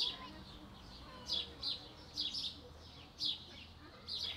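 Small birds chirping: short, high, falling chirps that come in little clusters about once a second.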